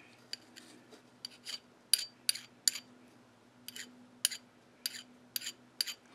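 Hand file stroked across the steel tip of a lathe dead center in short, sharp strokes, about two to three a second with a brief pause midway. This is a file test of case hardening, with the file cutting the steel bright.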